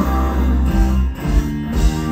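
Live southern rock band playing through a stage PA, led by electric and acoustic guitars over a heavy bass.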